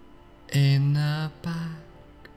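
A man's voice slowly intoning two drawn-out, flat-pitched words, the first about half a second in and the second just after, over soft, steady background music.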